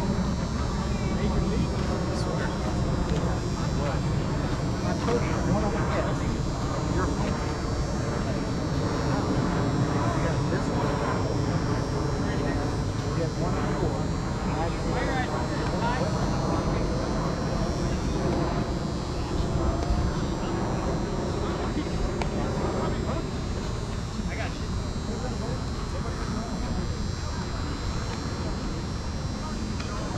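Indistinct voices of players talking and calling out across a softball field, over a steady low rumble.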